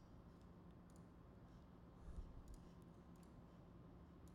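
Near silence: quiet room tone with a few faint computer mouse clicks, most of them in the second half.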